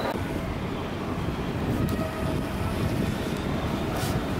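Steady low rumble of a subway station, from trains or escalator machinery, with no clear rhythm.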